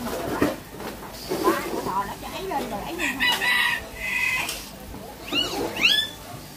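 A rooster crowing over background chatter: a drawn-out high call about three seconds in, then short rising-and-falling cries just before the end.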